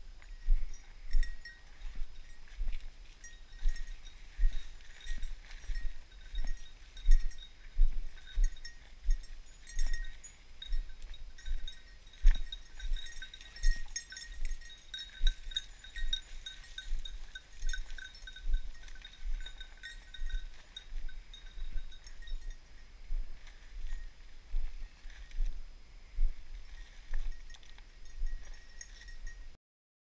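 Footsteps crunching through dry leaves and brush, about three steps every two seconds, each one bumping the microphone, with faint high tones from a hunting dog's collar coming and going. The sound stops abruptly near the end.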